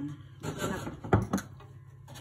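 Two sharp knocks just after a second in, about a fifth of a second apart, following a short stretch of rustling handling noise.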